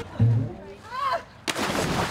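A person falling off a large inflatable ball into a pool: a sudden loud splash about one and a half seconds in, running on as churning water. A short yelp comes just before.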